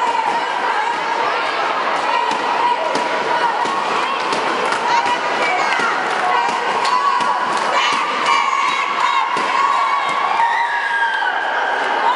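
A group of girls cheering and shouting together, with many overlapping voices and frequent handclaps.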